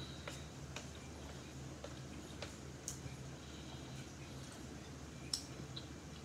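Faint sounds of eating ramen noodles with chopsticks: chewing and a few soft, scattered clicks, one a little louder about five seconds in, over a low steady hum.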